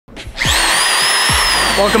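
Handheld electric drill revved: its motor whine climbs quickly to a high pitch about half a second in, then holds and slowly sags as it keeps spinning.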